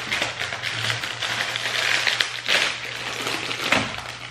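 Plastic inner bag of a cookie box crinkling and rustling in irregular bursts as it is pulled open by hand.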